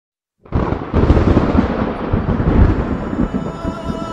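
Thunder sound effect that starts suddenly about half a second in and rumbles on in rolling waves. Sustained music tones rise in under it near the end.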